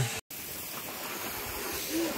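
Garden hose spraying water: a steady, even hiss that starts suddenly just after a brief dropout near the start.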